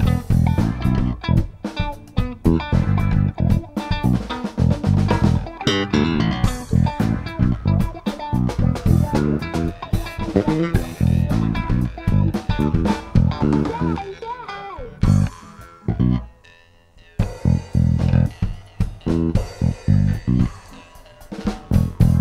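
A post-punk band jamming a rehearsal improvisation: bass guitar, guitar and drum kit playing together. About three-quarters of the way through, the playing thins out and almost stops, then picks up again.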